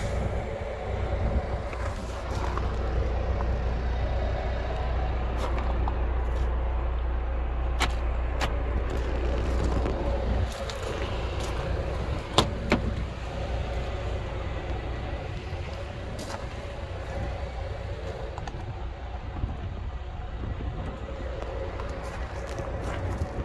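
Steady vehicle engine hum with a low rumble that eases off about halfway. Over it are a few sharp clicks, the loudest a single latch click as the Hyundai Santa Fe's rear door handle is pulled a little past halfway.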